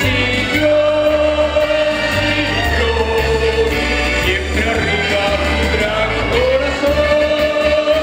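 A man singing through a microphone and PA over a live band, holding long notes above a bass line.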